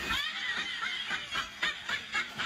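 High-pitched laughter in quick repeated bursts, several a second.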